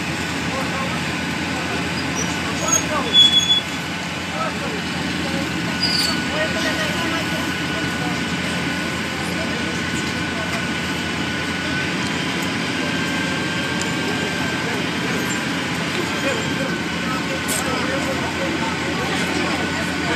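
Heavy diesel machinery running steadily amid street noise as a hydraulic excavator works on a building demolition, with a brief louder noise about three seconds in.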